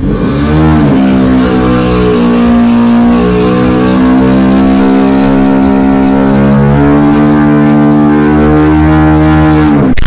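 An engine revs up about half a second in and is held at steady high revs, stepping slightly in pitch a couple of times, then drops back just before the end.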